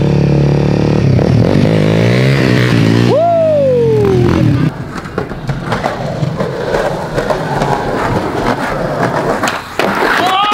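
Dirt bike engine revving as it rides past, its pitch swinging up and down and then dropping steeply as it goes by. Just before halfway it cuts off suddenly, and a skateboard rolls over rough pavement with scattered clacks and knocks.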